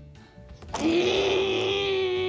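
A child's voice making a buzzing toy-car engine noise, held on one steady pitch. It starts about three quarters of a second in and is loud.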